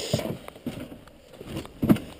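A parked Polaris Indy 500 XC snowmobile with its engine off, rocked by the rider's weight on its soft suspension: low rustling and a few soft knocks, then a short effortful vocal sound near the end.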